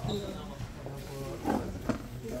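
Indistinct chatter of several people talking at once, with two louder moments of voice near the end.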